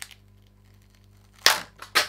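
A loud sharp snap about one and a half seconds in as the pressed eyeshadow insert pops out of its palette compact and flies loose, followed by a second sharp click at the end.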